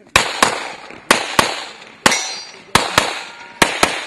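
Handgun fired rapidly: nine shots, mostly in quick pairs about a third of a second apart, each trailing off in a short echo.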